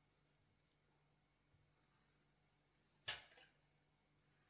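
Near silence with faint room tone, broken by one sharp click about three seconds in: hands handling the fly in a fly-tying vise.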